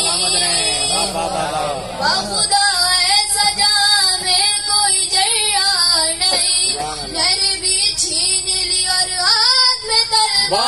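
A boy singing a devotional Urdu poem into a microphone in a high voice, his pitch bending and wavering on long held notes.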